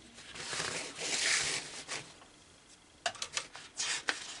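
Paper pages of an instruction booklet being handled and turned: a rustling sweep lasting about a second and a half, then a few light taps and clicks near the end.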